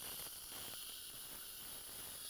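Surgical suction and irrigation hissing faintly and steadily while the implant bed is drilled with a pilot drill.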